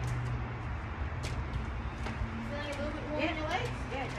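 Steady low background rumble, with faint, indistinct voices in the second half.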